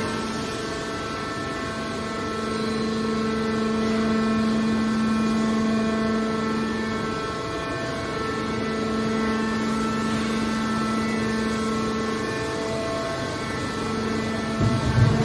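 Hydraulic scrap-metal baler's power unit (electric motor and hydraulic pump) running with a steady hum that swells and eases slightly.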